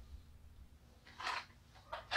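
A quiet room, broken by two brief soft rustling noises, one about a second in and one near the end.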